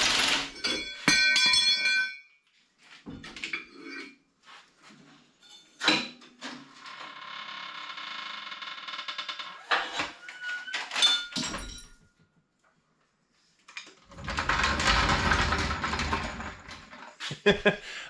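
Floor jack and hand tools at work on a pickup's rear axle: metal clinks and clicks with a little ringing, a knock, then a steady mechanical whir for a few seconds and a brief squeak. After a short pause comes a loud, rough, scraping rumble lasting about three seconds.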